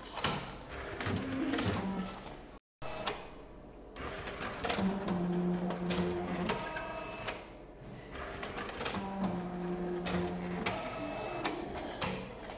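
Bank statement printer at work: repeated clicking and clattering from its paper feed and print mechanism, with two stretches of steady motor hum, about five and nine seconds in. The sound drops out briefly to silence just under three seconds in.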